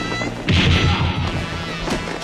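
A loud crashing impact about half a second in, a fight-scene hit effect as two fighters slam down onto the sand. A second, sharper hit comes near the end, and orchestral film-score music runs underneath.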